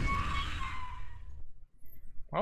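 The closing sound of a horror film trailer's soundtrack: a held tone over a low rumble, fading out about a second and a half in.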